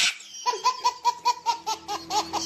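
A baby laughing hard in a quick run of short, repeated laugh bursts, about five a second, starting about half a second in. A short hiss fades out just before the laughter.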